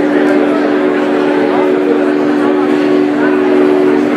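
Synthesizer holding one steady sustained chord, a low drone of several notes, with audience chatter underneath.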